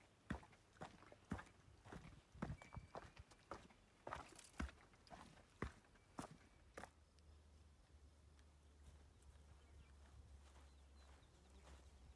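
Faint footsteps of a hiker on a rocky dirt trail, with sharp taps of trekking-pole tips on stone, irregular at about two a second. They stop about seven seconds in, leaving only a faint low steady rumble.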